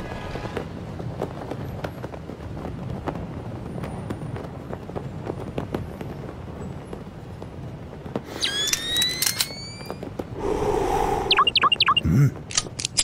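Low, steady ambient rumble. About eight seconds in comes a rising electronic whine in several parallel tones, then a short burst of noise and a quick run of short electronic chirps near the end: sci-fi targeting sound effects.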